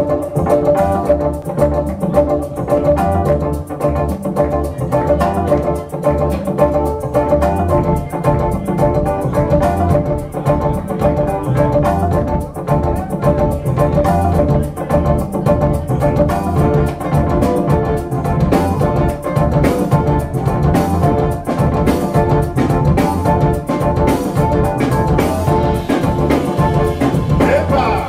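Live band playing a dance groove on drum kit, electric bass guitar and keyboard, with a steady beat and a prominent bass line.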